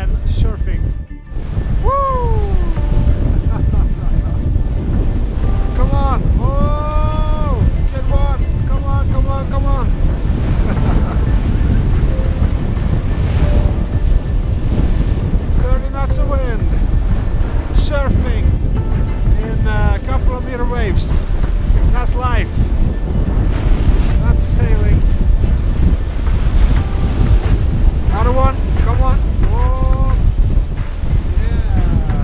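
Strong wind buffeting the microphone over the rush of waves and spray along a sailboat's hull as it sails hard in a gale. A pitched voice or melody rises over it every few seconds.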